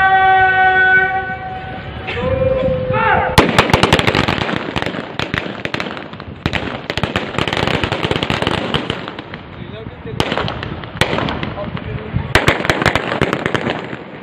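A long drawn-out shouted drill command and a shorter second one, then a feu de joie: rifles of a police parade contingent fired one after another down the ranks in rapid rippling volleys, starting about three seconds in. Further rounds of rippling fire follow, around six, ten and twelve seconds in.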